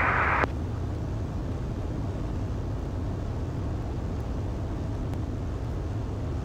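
Steady drone of a 1948 Ercoupe 415-E's Continental O-200 engine in level cruise, heard from inside the cockpit, with the sound sitting low and even.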